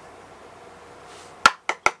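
Room hiss, then three sharp, hard taps in quick succession near the end, the first the loudest: a makeup brush tapped against a jar of loose setting powder.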